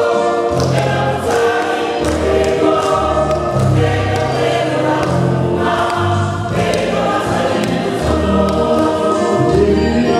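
Mixed choir singing a Congolese gospel song in full voice, with a low bass line moving underneath.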